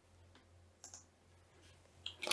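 Near silence with three faint computer-keyboard clicks about a second apart, over a faint low hum.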